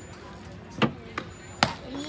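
Softball bat striking the ball in a pitched at-bat, heard as sharp knocks: three in under a second, the last the loudest.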